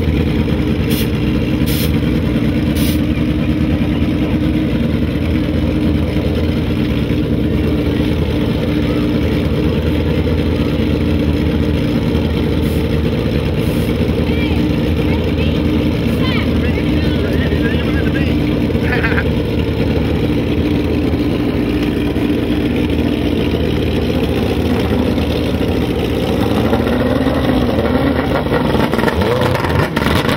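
Drag-racing motorcycle engines running steadily at idle while the bikes stage at the start line, with a rev rising near the end.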